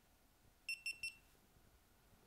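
GoPro Hero3 action camera beeping three times as it powers on: three quick high electronic beeps at one pitch, the last a little longer.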